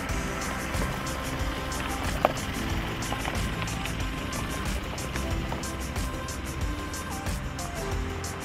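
Background music with a steady beat over a Mitsubishi Pajero SUV rolling slowly past on a gravel track, its engine and tyres on the loose stones making a steady rumble. A single short sharp click about two seconds in.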